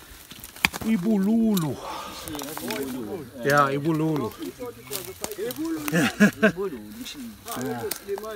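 Voices of several people talking, with a few sharp clicks among them.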